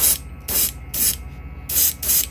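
Airbrush spraying paint in about four quick, separate bursts of hiss, over a steady low hum.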